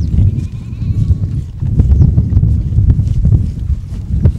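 A domestic goat bleats once near the start, a short wavering call, over a steady low rumble of wind on the microphone.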